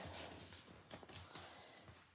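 Near silence: faint soft rustles of paper envelopes being handled and slid on a table.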